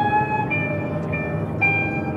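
Live instrumental jazz: a slow line of high held notes, each lasting about half a second before stepping to a new pitch, over a low sustained background.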